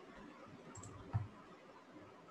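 A single sharp computer-mouse click about a second in, with fainter ticks just before it, over faint steady hiss.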